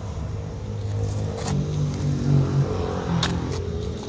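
Engine running with a steady low hum, its note growing stronger for about a second in the middle, with a few light clicks.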